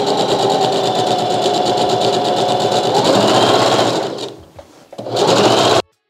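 Singer Heavy Duty sewing machine stitching satin: a steady motor whine with rapid needle strokes. It speeds up about three seconds in, then slows almost to a stop, makes a short second run and cuts off suddenly just before the end.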